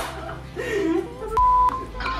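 A short electronic beep: one steady tone about a third of a second long, starting and stopping with a click, among voices.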